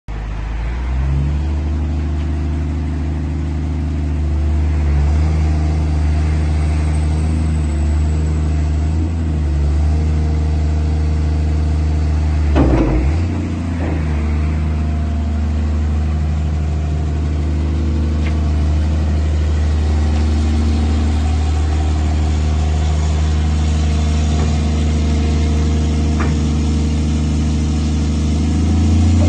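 The Isuzu six-cylinder turbo diesel of a Case CX210 tracked excavator running steadily while the boom, arm and bucket are worked. There is a brief knock about halfway through.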